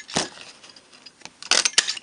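Hand-held scallop oval craft punch cutting through cardstock: a sharp click about a quarter second in, then a louder cluster of snapping clicks as the punch is pressed shut about a second and a half in.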